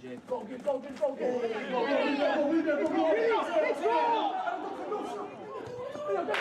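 Several voices shouting over one another at once. The shouting grows louder about a second in and eases off near the end.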